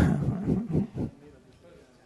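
A sudden, loud, rough vocal burst close to a microphone, lasting about a second.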